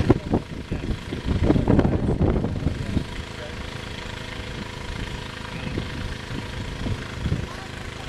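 Indistinct voices for about the first three seconds over a steady engine running at idle. The engine hum then carries on evenly on its own.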